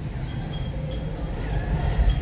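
Street noise dominated by a steady low engine rumble from a motorcycle coming up a narrow lane, with a few faint short high chirps.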